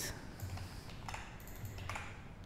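Computer keyboard typing: a few faint, irregularly spaced keystrokes over a faint low hum.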